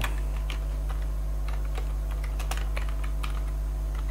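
Typing on a computer keyboard: a quick, irregular run of key clicks. A steady low electrical hum runs underneath.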